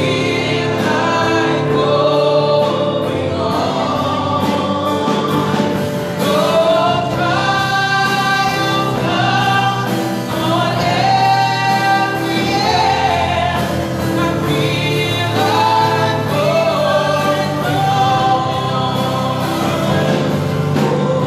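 A small group of women singing a gospel praise song together through microphones, with long held notes that waver in pitch, over steady held keyboard chords.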